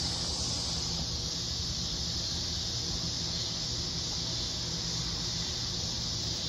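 Steady, high-pitched chorus of insects such as crickets, with a low steady hum underneath.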